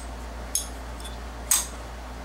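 Hinged lid of a Zippo Barcroft No. 3 table lighter clicking open and shut: two sharp metallic clicks about a second apart, the second louder. This is the distinctive Zippo lid click.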